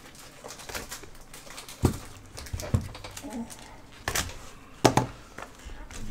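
Plastic shrink wrap being cut and peeled off a cardboard trading-card box by gloved hands, with light crinkling and four sharp clicks and knocks as the box is handled.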